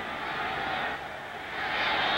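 Stadium crowd noise from a large football crowd, a steady murmur that swells a little near the end.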